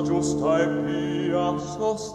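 Baroque vocal music: singing voices with vibrato over sustained low notes from a baroque continuo ensemble.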